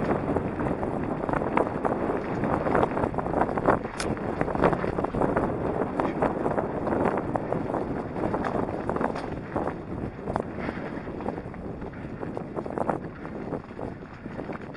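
Mountain bike tyres rolling over a loose gravel and rocky dirt trail, a continuous crunching rumble dotted with many small clicks and knocks from stones and the bike rattling over them.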